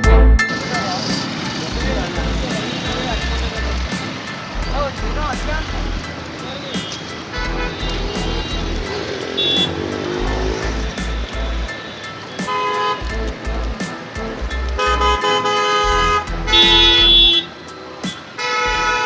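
Street traffic with vehicle horns honking, a short honk then several longer ones in the second half, over background music with a steady beat.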